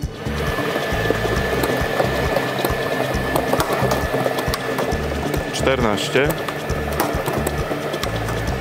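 Plastic lottery balls clattering and rattling as they tumble around inside a lottery draw machine's transparent mixing drum, a dense, continuous din of small knocks. Background music with a low bass line plays underneath.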